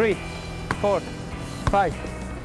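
A football being juggled: three sharp thuds of the ball off players' feet, about a second apart. Short shouted counts go with the touches.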